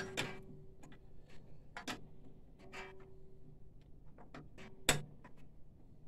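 Hand screwdriver driving screws into a printer's sheet-metal chassis: scattered small ticks and scrapes, with one sharp click about five seconds in.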